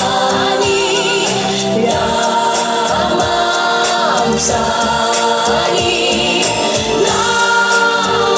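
A pop song playing loud, with several voices singing together over a full band backing track.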